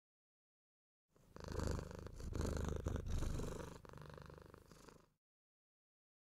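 Domestic cat purring right at the microphone, with a rapid low pulsing. It starts about a second in, is loudest in the first half, softens for the last second or so and stops abruptly.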